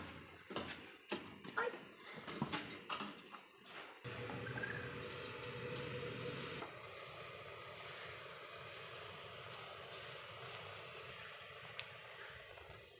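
A few scattered knocks and clicks, then from about four seconds in a steady hiss from a gas stove burner heating a pot of milk tea.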